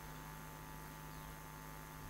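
Faint, steady electrical mains hum and hiss from the microphone and sound system, with nothing else sounding.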